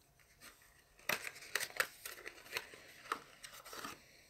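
Small cardboard product box being opened and handled by hand. From about a second in there is a quick, irregular run of sharp scrapes, rustles and taps.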